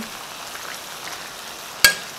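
Chicken, tomatoes and spices sizzling steadily in a stainless steel pot on the stove. Near the end a spoon gives one sharp clink against the pot.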